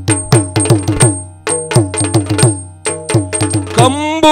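Yakshagana percussion: the chande drum struck with sticks and the maddale barrel drum play a fast run of strokes, many of them falling in pitch just after the hit. Small hand cymbals ring in time over a steady drone, and a singer's voice comes in at the very end.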